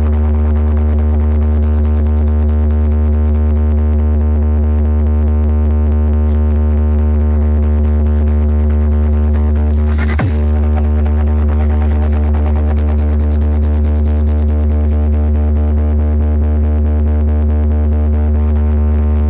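DJ sound-system bass cabinets playing a loud, steady, sustained deep bass tone from a 'pop bass' test track, with one brief falling sweep about ten seconds in.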